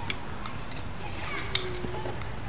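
Diabolo being worked on its string, with a light click at the start and a sharper snap about three-quarters through as it is tossed up, over a steady faint background.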